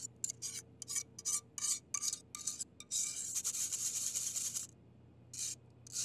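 Thick pastry cream being worked through a fine-mesh metal sieve: a run of short scraping strokes, about four a second, then one longer continuous scrape about three seconds in, and a last short stroke near the end.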